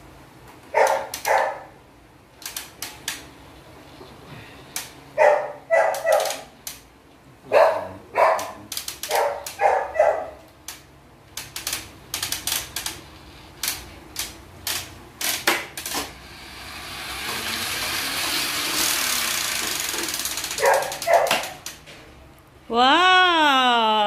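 A dog barking in short runs of two to four barks, with clicks and knocks of hard plastic toy parts being handled and fitted together. For a few seconds near the end a hiss swells up and fades.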